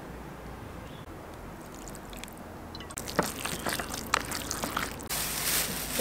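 Peanut oil poured from a plastic bottle onto minced pork filling in a bowl, a low trickle. A run of light clicks and knocks follows from about halfway, and a steady hiss takes over near the end.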